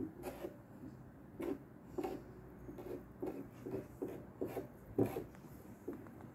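Hands smoothing and folding organza fabric on a table: soft, irregular rustles and rubs.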